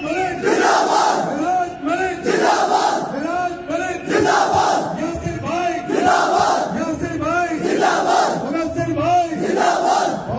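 Large crowd of men shouting together, loud and continuous, rising and falling in repeated surges.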